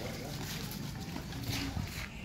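Faint, indistinct voices in the background, with a short pitched sound near the end.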